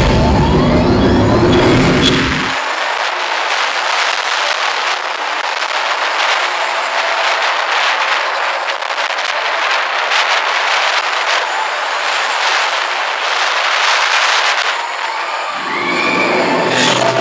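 Roller-coaster ride heard from the lead seat: for the first two seconds, onboard soundtrack music over a deep rumble, then a loud, steady rush of wind over the microphone as the TRON Lightcycle coaster speeds along its track. Just before the end the deep rumble returns as the train enters the dark show building.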